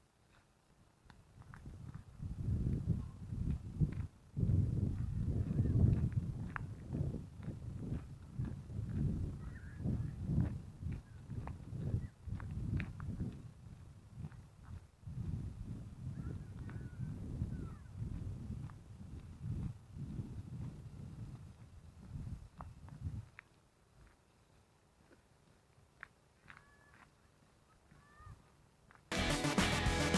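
Wind buffeting the built-in microphone of an Akaso V50X action camera: a low, gusty rumble that rises and falls, the loudest thing in the camera's otherwise thin sound, dying away about 23 seconds in. A few faint chirps follow, and music starts near the end.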